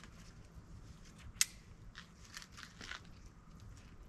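Lineman's belt being unhooked and removed from around the tree: scattered small clicks and rustles of strap and hardware, with the sharpest click about a second and a half in.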